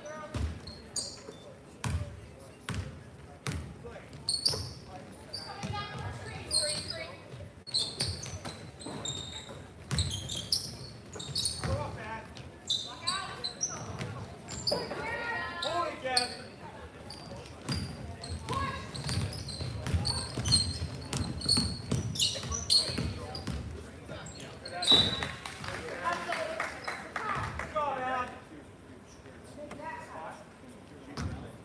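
A basketball bouncing repeatedly on a hardwood gym floor during live play, with voices calling out across the echoing hall, loudest about five seconds before the end.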